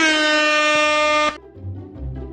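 A single loud horn-like blast from an intro sound effect: one held pitched tone that dips at its start, then holds steady and cuts off suddenly about a second and a half in. Quieter background music with a bass line comes in near the end.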